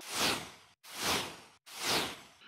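Three whoosh transition sound effects in quick succession, each a smooth swell that sweeps down in pitch and cuts off abruptly before the next.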